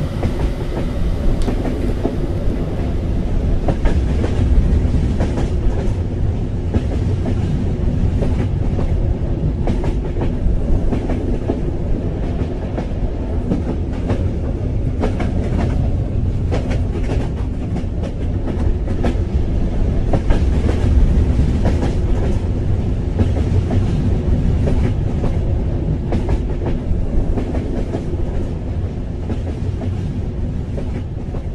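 Train running along the tracks: a steady low rumble with a rapid clickety-clack of wheels over the rails.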